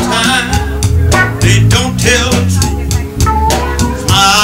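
A live band playing a soul song: a drum kit keeping a steady beat with congas, electric guitar and keyboard, and singing over the top.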